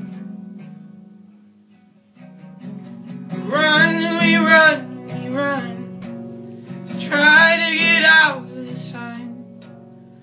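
A man strumming an acoustic guitar and singing. The guitar fades away over the first two seconds, picks up again about two seconds in, and two long sung phrases come in around four and around seven to eight seconds in.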